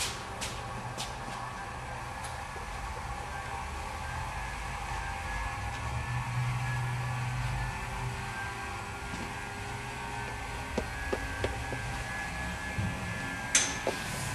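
A small homemade rotary attraction motor (a magnet rotor driven by a switched electromagnet) running steadily with a low hum and a faint whine, powering a 12-volt bulb as its load. A few light clicks come in the first couple of seconds and another just before the end.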